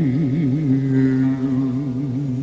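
A man's singing voice holding one low note, wavering in wide vibrato for about the first second and then held steady.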